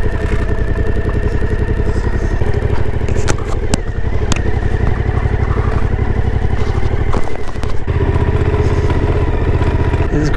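Suzuki V-Strom 1050's V-twin engine running at low speed as the motorcycle rides slowly over rough, stony ground, with a few sharp clacks about three to four seconds in. The engine note dips briefly around seven seconds, then comes back fuller about a second later.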